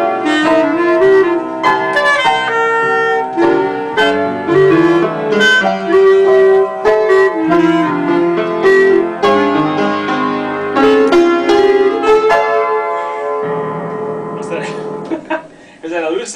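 Piano and clarinet playing together: struck piano chords under a sustained clarinet melody. Near the end the music thins out and gets quieter.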